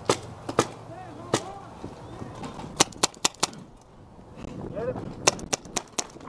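Paintball markers firing: sharp pops, a few single shots in the first second and a half, a quick run of four shots around three seconds in, and another rapid run of three or four near the end.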